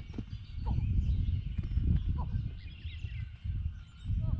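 Uneven low rumble of wind buffeting the microphone, with a few faint, short, high bird chirps.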